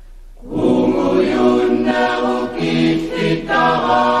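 A choir singing a cappella: after a soft held note, a loud new phrase starts about half a second in, several voices on different pitches, with brief breaths between phrases.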